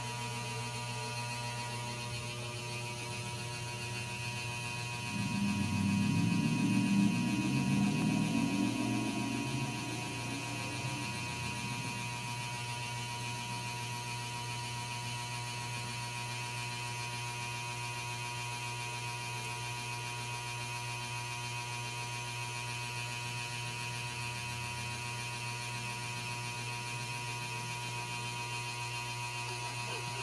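Steady electrical mains hum with a thin higher whine. For several seconds about a third of the way in, a louder rough low rumble rises over it and fades away.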